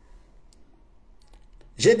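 A few faint, scattered clicks from a mobile phone being handled and lowered from the ear after a call; a man's voice starts near the end.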